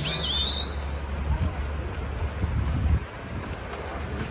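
Wind rumble on the microphone over a steady, noisy outdoor pool-deck background. A short, high, wavering whistle-like tone rises at the very start.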